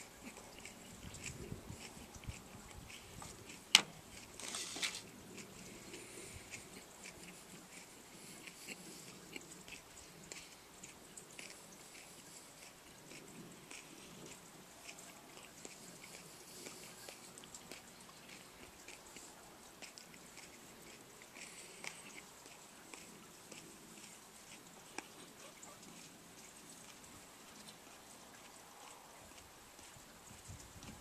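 Faint chewing of a raw orange Bhut Jolokia ghost pepper: soft wet mouth clicks and crunches. A sharp click stands out about four seconds in, followed by a short noisy burst.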